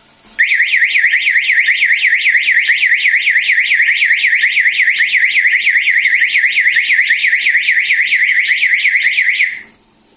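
Electronic warbling siren of a 220 V float-switch water-level alarm, sweeping rapidly up and down about five times a second: the rising water has pushed the float switch up to signal a full tank. It starts about half a second in and cuts off suddenly near the end as the alarm is switched off by its remote.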